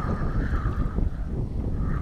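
Wind noise on the microphone, with the whir of a spinning reel being cranked, wavering in pitch, as a hooked fish is reeled in.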